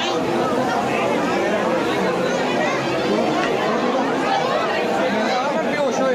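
Crowd chatter: many people talking at once in a packed hall, some voices close to the microphone.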